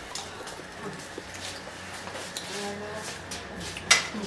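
Quiet room with faint voices in the background, then one sharp, loud click near the end as a front door's latch is worked open.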